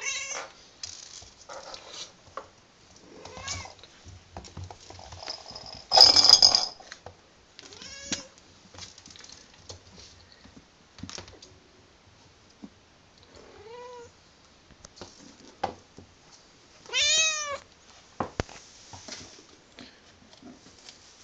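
Snow Bengal kitten meowing: about five short, high mews that rise and fall in pitch, the loudest near the end. A brief loud burst of noise comes about six seconds in, and a few soft knocks.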